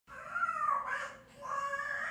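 Two drawn-out, wavering animal-like cries with gliding pitch: the first lasts about a second, and the second starts about a second and a half in.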